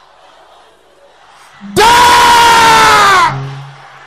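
A faint crowd murmur, then, a little under two seconds in, one loud, long shout from a man's voice on a microphone. It is held on one pitch for about a second and a half and drops as it ends: a preacher's shout leading a loud prayer.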